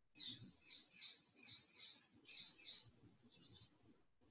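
A bird chirping faintly in the background: a quick run of about seven high chirps, roughly three a second, then a few weaker ones.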